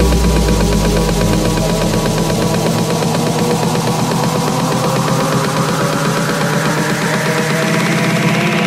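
Electronic dance music breakdown: the kick drum drops out, a deep bass hit fades over the first two seconds or so, and a rising hiss sweep builds under sustained synth chords, the build-up before a drop.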